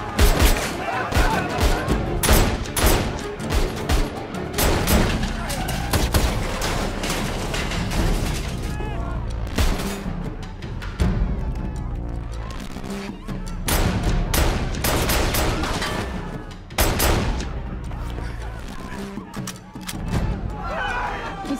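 A handgun fired repeatedly in a movie gunfight, sharp shots scattered through the whole stretch over a steady music score.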